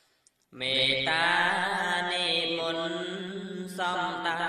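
A solo male voice chanting Khmer Buddhist smot, one long, ornamented phrase with wavering pitch. It comes in after a brief pause about half a second in, and a new phrase begins just before the end.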